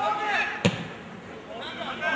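A football kicked once, a single sharp thud about two-thirds of a second in, among a spectator's shouts.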